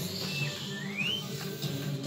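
Pinball machine's electronic music with a steady low repeating pattern, over which a whistle-like sound effect plays: a short high tone, a lower held note, then a quick rising glide about a second in.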